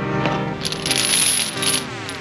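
Steel load-securement chains clinking and rattling as they are handled on pavement, starting about half a second in, over background music.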